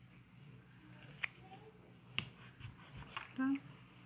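Quiet handling of cotton fabric in a machine embroidery hoop, with two sharp clicks about a second and two seconds in and a few fainter ticks after.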